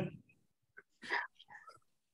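Brief, soft laughter from people on a video call, in a few short, faint bursts about a second in.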